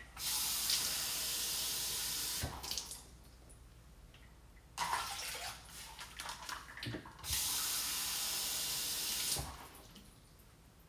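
Kitchen faucet running into a measuring cup, turned on and off: about two and a half seconds of running water, a shorter burst about five seconds in, then another two seconds of running water near the end. Cupfuls are being measured out one at a time for the pot.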